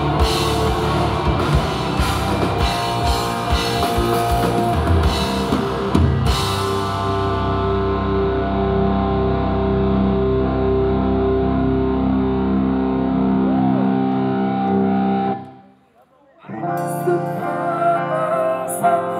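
Live rock band playing with a drum kit and guitar. The drums stop about six seconds in and held chords ring on for several seconds, falling away to a brief near-silent gap, and softer music starts again near the end.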